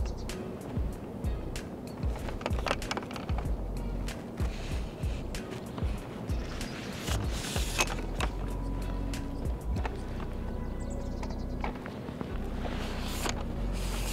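Background music over a series of sharp clicks and snaps from a telescopic long-reach pole pruner as its cutting head works on the tips of young walnut shoots. The broadest snaps come about halfway through and again near the end.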